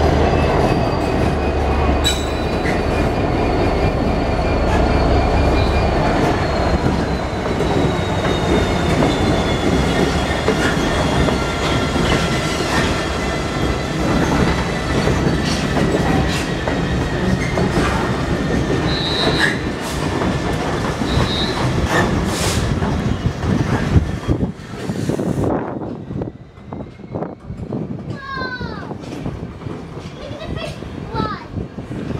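A slow freight train with three GBRf Class 66 diesel locomotives passes by, only one of them under power. A deep engine drone is heard for the first few seconds, along with long, slowly falling wheel-flange squeals and wheels knocking over rail joints. The sound drops away about 25 seconds in as the wagons roll past.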